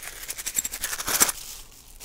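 Tissue paper crinkling and rustling as a wrapped bundle of plastic game tokens is pulled open. A quick run of crackles fills the first second and a half, loudest just past the middle, then dies down to faint rustling.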